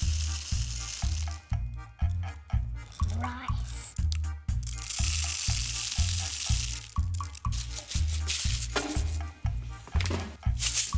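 Dry rice pouring through a plastic funnel into a plastic water bottle, a hissing trickle heard in the first second or so and again for about two seconds midway, over background music with a steady bass beat.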